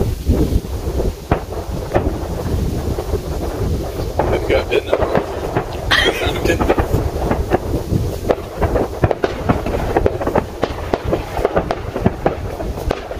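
Distant aerial fireworks going off in quick succession: a steady run of sharp pops and crackles over low rumbling booms.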